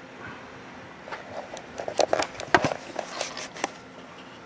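Handling noise from a video camera being picked up and moved by hand: a quick irregular run of clicks, knocks and rubs starting about a second in, loudest a little past the middle.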